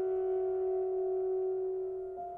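Saxophone and piano holding one long, steady soft note in a classical chamber piece.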